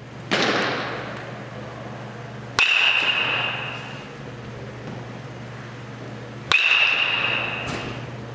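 Metal baseball bat striking balls twice, about four seconds apart, each a sharp crack with a high ringing ping that fades over a second or so. A duller impact comes just after the start, and a steady low hum runs underneath.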